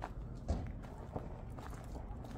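Footsteps on a loose gravel path: four separate steps, the second the loudest.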